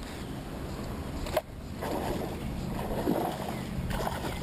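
Water lapping against a bass boat's hull under a steady low hum, with one sharp click about a second and a half in.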